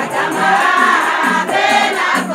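A group of women singing together over a steady rattling percussion beat: a Somali Bantu wedding dance song.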